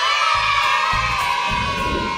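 A crowd of children cheering and shouting, starting suddenly, over background music.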